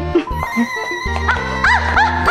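Background music score of a TV comedy: a low sustained bass note under held high tones, with short swooping squeals that rise and fall in the second half.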